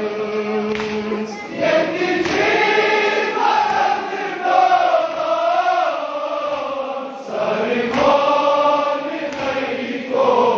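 A group of men's voices chanting a noha, the Shia lament of Muharram, together in long, wavering sung phrases.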